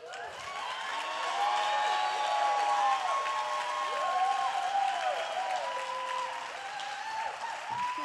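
Congregation applauding a person called up onto the stage; the clapping swells over the first couple of seconds, holds, then slowly dies down.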